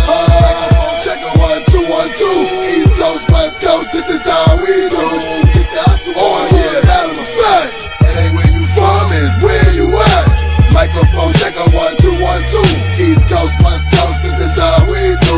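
Hip hop track playing from a vinyl record: a steady drum beat with melodic lines over it, and a deep bass line coming in about eight seconds in.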